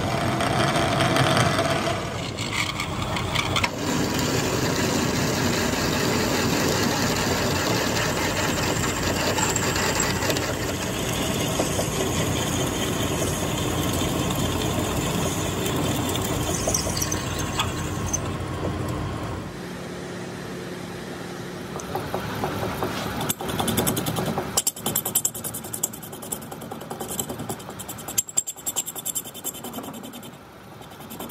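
Metal lathe running while a large twist drill bores into the end of a steel shaft, giving a loud, steady machining noise. About twenty seconds in, the sound drops and turns to uneven scraping as a lathe tool bit cuts the shaft end.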